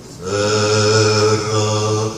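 A man singing unaccompanied, holding one long steady note of a Sephardic lullaby in Ladino after a short breath pause at the start.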